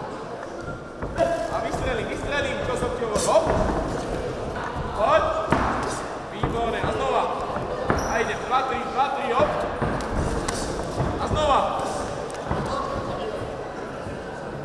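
Amateur boxing bout: irregular thuds of padded gloves landing and boxers' feet on the ring canvas, with voices shouting throughout.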